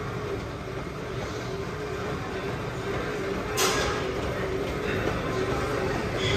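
Gym cardio trainer being worked hard: a steady mechanical rumble with a faint hum, and one sharp clack about three and a half seconds in.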